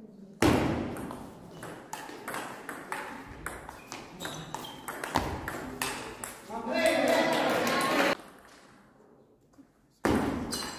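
Table tennis rally: the celluloid-plastic ball pinging off rubber bats and the table in a quick, irregular series of sharp clicks for several seconds. It ends in a shout lasting over a second, about seven seconds in.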